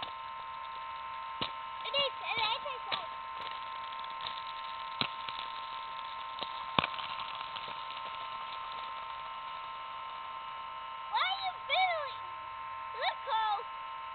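Young children's high-pitched wordless cries and squeals, a few around two seconds in and more near the end, over a steady whine of several tones. A few sharp clicks fall in the quieter middle.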